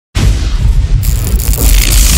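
Storm sound effect: a deep, loud rumble of thunder that starts suddenly, with a hiss of rain joining about a second in.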